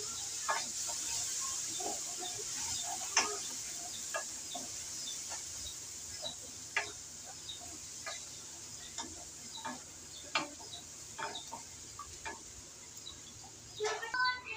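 Onions, garlic, ginger and green chillies sizzling in oil in a metal karahi as a wooden spoon stirs them, with scattered short ticks and clicks. The sizzle grows quieter toward the end.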